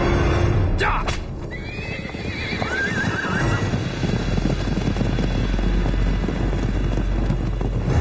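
Horses whinnying twice, about a second and a half and about two and a half seconds in, followed by the dense hoofbeats of several horses galloping on a dirt track.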